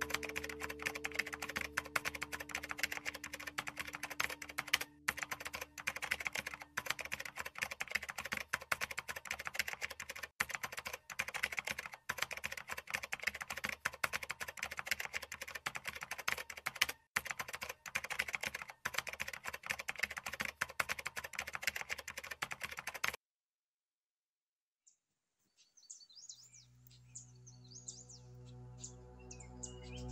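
Rapid, continuous keyboard-typing clicks, stopping suddenly about 23 seconds in. After a short silence, birds chirp and guitar music fades in near the end.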